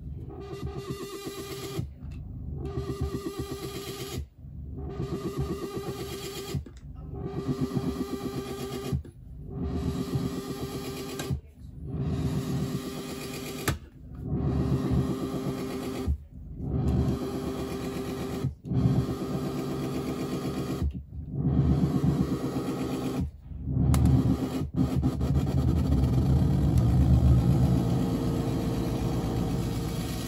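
Noise music from a modular synthesizer patch run with a Big Muff fuzz pedal: a buzzing drone cut into pulses by brief dropouts about every two and a third seconds. In the last few seconds the pulses stop and it becomes a louder, continuous low rumble.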